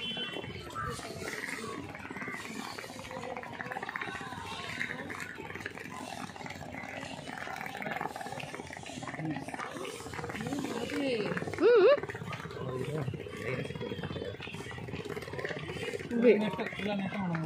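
Voices and chatter of people walking along a park path, with one loud, short, wavering call about twelve seconds in.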